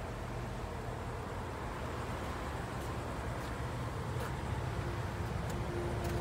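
Steady outdoor background noise: a low rumble and hiss with no distinct event, with a faint steady tone in the second half.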